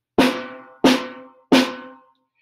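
Narrow, shallow orchestral snare drum with thin heads, its snares engaged, struck three times with small-bead sticks about two-thirds of a second apart. Each stroke rings and fades before the next.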